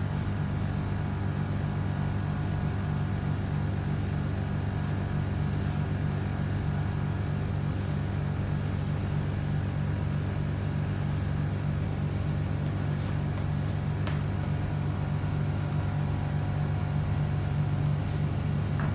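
A steady low hum made of several fixed tones, unchanging throughout, with a faint click or two.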